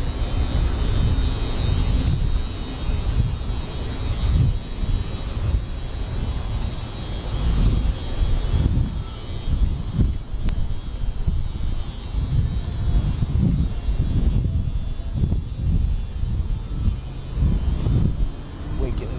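Wind buffeting the microphone in uneven gusts, a low rumbling rush that swells and drops every second or so.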